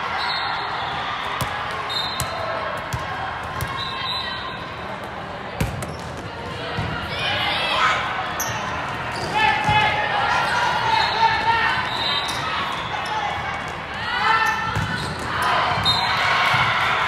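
Indoor volleyball being played in a large, echoing hall: a scatter of sharp ball hits on the court, several short shouts from the players, and a steady din of voices across the hall.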